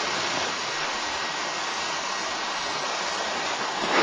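Steady rushing noise of a mass of snow and ice sliding off a roof edge.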